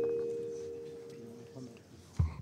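The ringing tail of a two-note chime, two steady tones fading away over about a second and a half.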